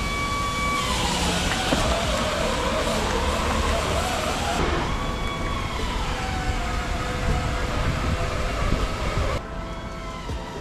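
Whine of a Tesla electric drive unit in a converted Mercedes 300CD as the car is moved at low speed. A thin tone holds, slides down about a second in, rises again about halfway, then falls and holds lower, over steady background noise.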